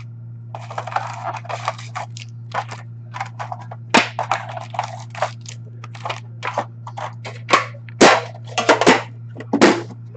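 Foil hockey card packs crinkling and clacking as they are pulled out of a tin box and stacked on a glass table, with the sharpest clacks about four seconds in and near the end. A steady low hum runs underneath.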